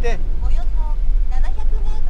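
Steady low rumble and road noise of a camper van driving on a wet road, heard from inside the cab, with a man's voice speaking briefly a few times over it.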